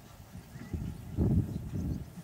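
Wind buffeting the camera microphone: an irregular low rumble that swells sharply about a second in.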